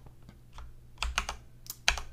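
Computer keyboard keys clicking: a handful of separate key presses, most of them in the second half.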